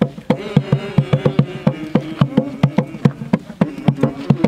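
Procession music: quick, even drumbeats, about five a second, under a steady buzzing held note from a horn.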